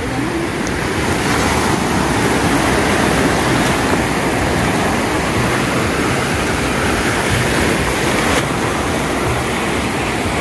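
Sea surf washing up a sandy beach: a steady rush of breaking waves and foam, with wind rumbling on the microphone.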